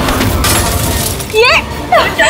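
Glass of a picture frame shattering as it hits the floor, a burst of breaking glass in the first second, followed by a loud shouted word.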